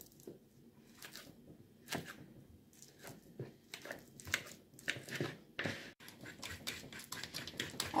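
A fork mashing bananas in a plastic mixing bowl: irregular soft squishes and clicks of the tines, coming faster in the second half.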